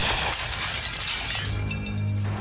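The dying blast of a shotgun that went off as it fell, with glassware shattering and pieces clattering down for about a second and a half. A low, steady music drone comes in near the end.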